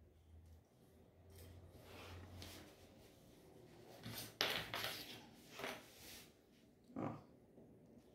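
Faint rustling of cotton fabric being handled and folded by hand, with a louder short rustle about four and a half seconds in.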